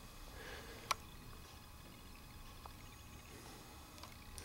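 Quiet room tone with one sharp faint click about a second in and a weaker tick a little later.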